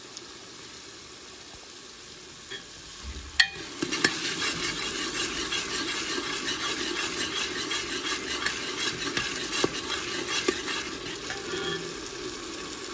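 Onions frying in a pan, with a low steady sizzle at first. About three and a half seconds in, a spoon knocks against the pan twice and then stirs steadily, scraping and clattering through the sizzling onions.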